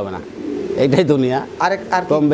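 Pigeons cooing.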